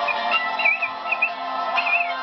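Instrumental karaoke backing track with sustained chords, over which short high warbling whistle-like notes come in three brief phrases.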